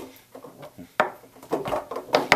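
Foosball being struck and passed by the hard foosmen on a Tornado foosball table: a series of sharp knocks and taps, the loudest about a second in.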